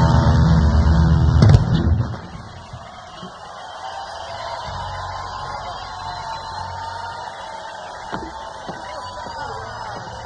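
A live rock band ends its song with a final crashing hit about a second and a half in. The band then stops, leaving a large outdoor festival crowd cheering and whistling.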